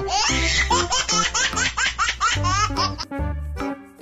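A baby laughing, a quick run of short rising 'ha' sounds for about the first two and a half seconds, over cheerful children's background music.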